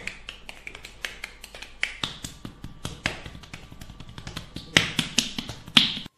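Hands striking a person's back in a fast percussive massage: a quick, irregular run of sharp slaps and claps, several a second, with the loudest strokes near the end.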